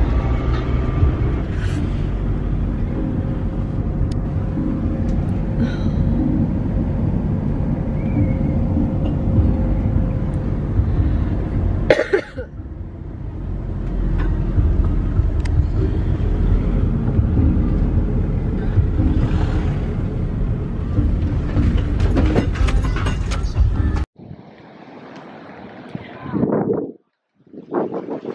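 Car interior noise while driving: a steady low road-and-engine rumble. It breaks off and dips briefly about halfway through, builds back up, then cuts off abruptly near the end to a much quieter sound.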